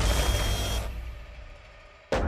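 Trailer sound design: a deep low rumble with a noisy wash above it, fading away over about a second and a half, the decaying tail of a boom. A faint thin high tone sits in it for the first part.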